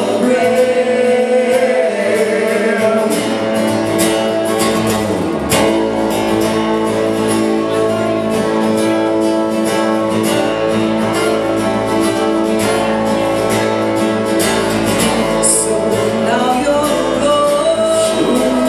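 Live acoustic performance: a woman singing a melody over an acoustic guitar.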